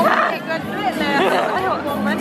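People talking and chattering over the babble of a seated crowd.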